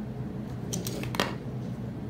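Handling noise from toy accessories being searched through: a few light clicks a little under a second in and one sharper click just after a second, over quiet room tone.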